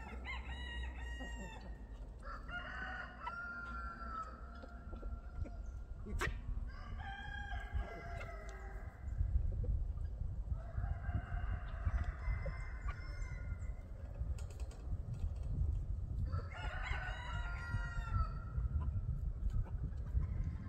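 Roosters crowing about five times, several seconds apart, with some clucking between crows. A steady low rumble runs underneath and grows louder about halfway through.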